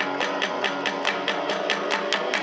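Kawachi ondo accompaniment between sung verses: electric guitar playing a strummed riff over taiko drum beats, at a quick, even beat.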